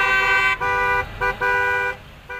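Semi-truck air horns honking: long, steady blasts of several notes at once, with two brief breaks, cutting off near the end.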